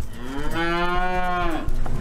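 Dairy cow mooing once, a single long call of about a second and a half that rises slightly at the start and falls away at the end.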